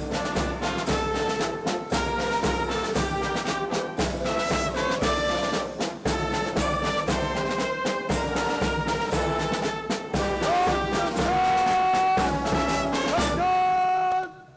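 Brass band playing a march over a steady bass drum beat, ending on a long held note.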